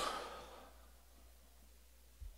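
A man's breathy sigh, an exhale that fades away over the first half second, then faint room tone.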